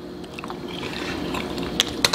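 Close-miked wet chewing and mouth sounds from a bite of saucy burrito, with a few sharp clicks near the end.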